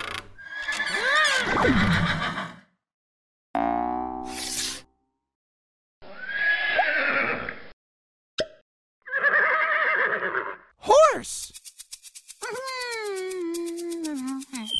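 A series of short wordless cartoon voice sounds with bending pitch, separated by brief silences, then a fast, even ticking under a long falling whistle-like tone near the end.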